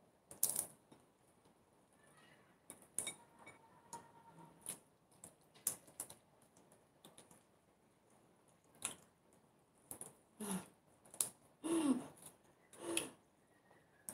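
Close-miked eating sounds: scattered clicks, crunches and lip smacks of someone chewing fried dried fish and rice eaten by hand. The sounds grow louder and come closer together near the end.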